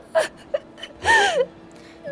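A young woman sobbing in a put-on show of grief: a few short gasping catches of breath, then one longer whimper that rises and falls a little past the middle.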